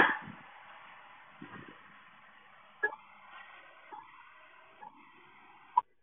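Faint hiss with four short, sharp clicks spread a second or so apart, the last the loudest; the sound cuts out just after it.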